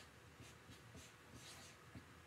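Faint strokes of a felt-tip marker on chart paper, a few short scratchy strokes as numbers are written.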